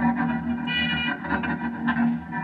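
Stratocaster-style electric guitar played through effects pedals: low notes held under a brighter note picked a little under a second in, and another sharp pluck near the end.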